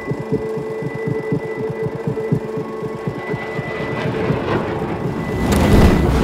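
Rapid, even mechanical clatter over a steady hum, swelling into a deep boom in the last second or so.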